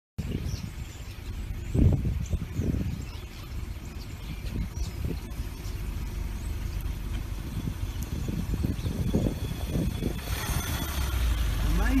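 A car creeping along while a dense flock of starlings rises around it: an uneven, fluttering low rumble, with faint bird calls scattered through it. A broad rush of noise joins in from about ten seconds in as more birds take to the air.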